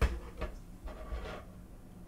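Small bare circuit board set down on a hard tabletop: a sharp tap at the start and a softer knock about half a second in, then faint scuffing as fingers slide it into position.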